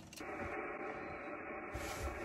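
Yaesu FT-991 HF transceiver's speaker giving a steady, muffled hiss of band noise with no station transmitting, the receiver open between contacts.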